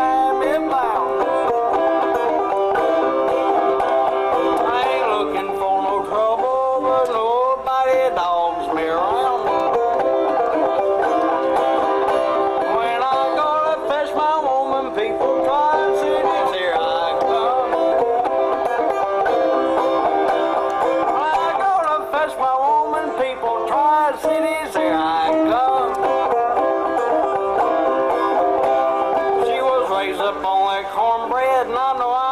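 Clawhammer-style banjo playing a steady, rhythmic old-time tune, heard through the stage's sound system.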